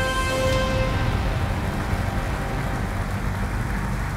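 A held musical chord dies away in the first second, giving way to steady audience applause.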